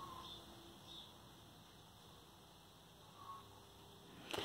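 Near silence: room tone, with a couple of faint, brief sounds about a second in and again near the end.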